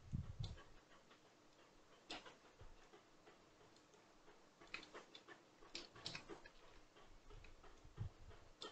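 Near silence broken by faint, scattered computer mouse clicks and key taps, bunched together about five to six seconds in.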